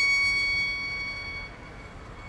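A violin holding a single high note that fades away within the first second and a half.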